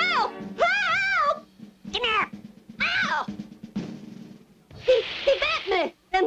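Cartoon soundtrack: about five short, high, wavering cries that bend up and down in pitch, over background music.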